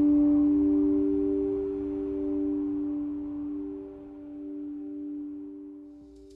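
Background music: a sustained, ringing low drone held on two notes, the upper note swelling about a second in, then the whole slowly fading out toward the end.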